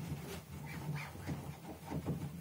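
Dry-erase marker squeaking in short strokes on a whiteboard while writing, over a steady low hum.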